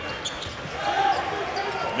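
Basketball arena game sound: the crowd murmuring while a basketball bounces on the hardwood court, with a short voice about a second in.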